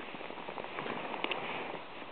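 Shallow stream water running over stones: a soft, steady wash, with a few faint clicks a little past a second in.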